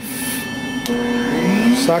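Dust-extraction suction for a PCB milling machine being switched on: a click just under a second in, then its motor starting up and rising in pitch.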